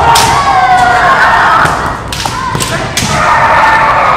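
Kendo fencers' kiai, long wavering shouts, with several sharp clacks of bamboo shinai striking, echoing in a gymnasium.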